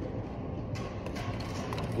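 A display camera being handled and lifted off its security stand: a few small clicks and rattles of the camera body and its tethered mount, over a steady low background hum.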